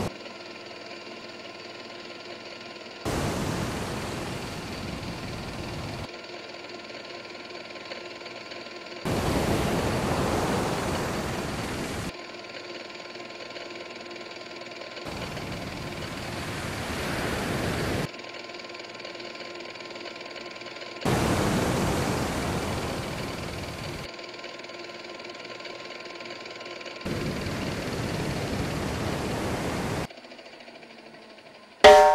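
Rough sea: five surges of wave noise about six seconds apart, each starting abruptly and fading over about three seconds before cutting off, with a steady hum underneath between them.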